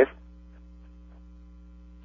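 Steady low electrical mains hum with a stack of evenly spaced overtones on the radio broadcast feed. A few very faint soft sounds lie behind it.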